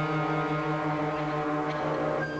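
Symphony orchestra holding a long, steady low note under sustained higher chords, with the upper parts changing near the end.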